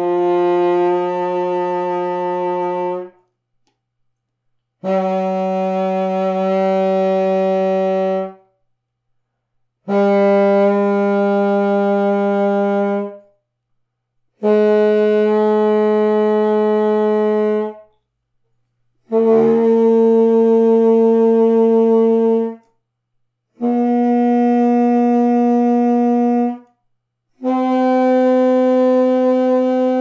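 Contrabassoon playing seven separate held notes of about three seconds each, with short breaks between, stepping upward in small steps: ordinary notes alternating with the quarter-tones between them.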